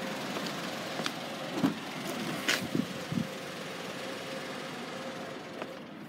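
Steady hum of an idling car over outdoor background noise, with a few faint knocks and clicks from the handheld camera being moved.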